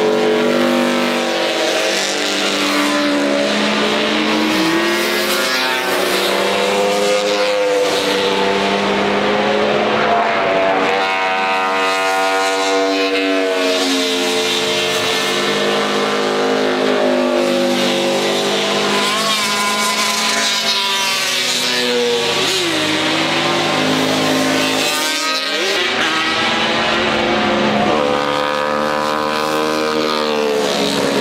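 Classic racing motorcycles passing at speed one after another. The engines run at high revs, their pitch rising and falling with gear changes and as each machine goes by, with several heard at once.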